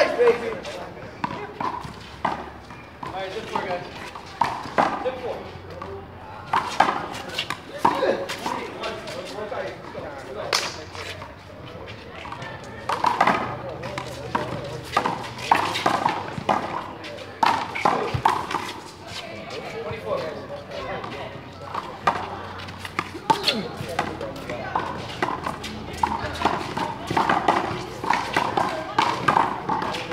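A small rubber ball in a doubles rally, slapped by gloved hands and smacking off the concrete wall and ground in sharp slaps at irregular intervals. Players' voices and calls run in between.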